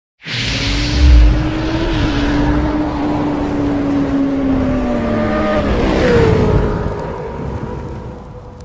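Motorcycle engine sound effect: a deep boom about a second in, then a steady engine note that sinks slowly in pitch and drops away about six seconds in, fading toward the end.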